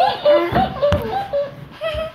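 Children's voices making wordless, high-pitched vocal sounds, with one sharp click about halfway through.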